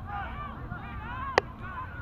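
Geese honking, many short overlapping calls, with a single sharp click about a second and a half in.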